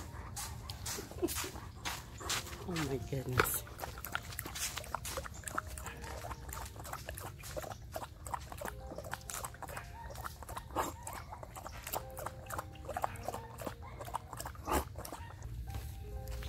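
A malamute and a husky lapping milk from plastic bowls on a glass tabletop: a steady run of short wet licking clicks, with a brief dog whine sliding down in pitch about three seconds in.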